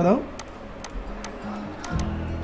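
Light ticks, about two a second, over faint background music with a low held tone.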